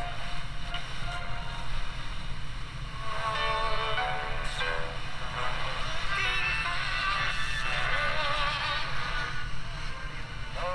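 GE 7-2001 Thinline pocket radio on FM, its small 1.5-inch speaker playing broadcast audio while the dial is tuned: an indistinct first few seconds, then snatches of music and singing from about three seconds in.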